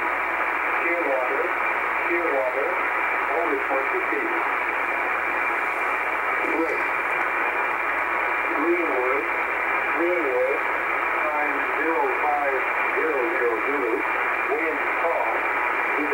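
A voice reading aviation weather over single-sideband shortwave radio, thin and narrow-band, half buried in steady static hiss so the words are hard to make out.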